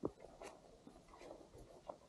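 Faint footsteps on a dirt forest path with the scratchy rustle of clothing and backpack gear, a sharp step right at the start and another near the end.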